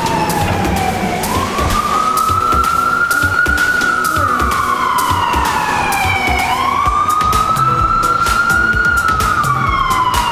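Emergency vehicle siren in slow wail mode, rising and falling in pitch about every five seconds: it climbs about a second in, peaks, falls, climbs again after six seconds and is falling near the end. Music plays underneath.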